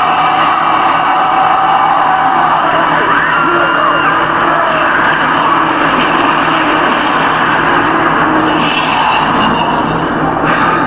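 TV drama soundtrack playing: a loud, steady rushing sound effect that accompanies an on-screen burst of magic.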